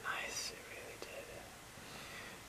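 A man's faint, breathy whisper trailing off in the first half second, with a fainter breathy sound about a second in.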